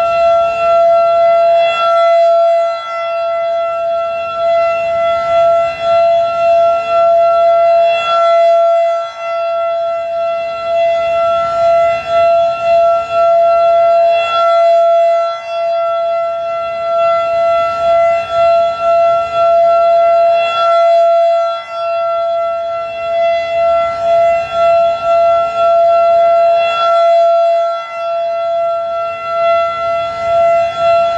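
Federal Signal 2001-SRN rotating outdoor warning siren sounding its full-alert steady tone. The pitch holds steady throughout, and the sound swells and fades about every six seconds as the horn turns toward and away.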